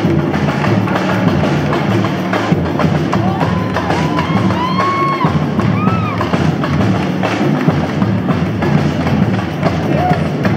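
Samba percussion from a live bateria (drum section) playing a steady, driving samba beat for dancers.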